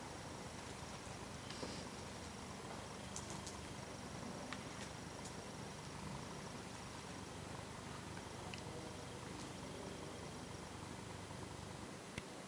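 Faint room tone in a large workshop hall: a low steady hum and hiss with a few light clicks.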